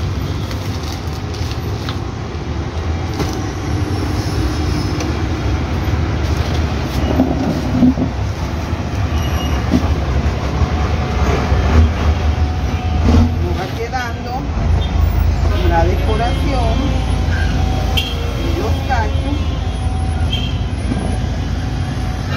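Steady low rumble of street traffic, growing heavier about two-thirds of the way through, with voices in the background.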